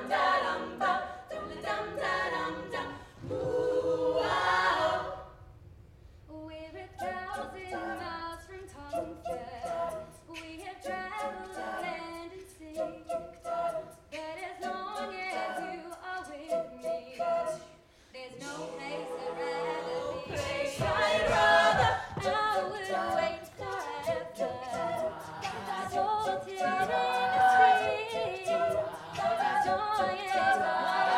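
All-female a cappella group singing in close harmony, with vocal percussion keeping a steady beat. The voices drop away briefly about five seconds in, come back softer over the beat, and swell to full volume about eighteen seconds in.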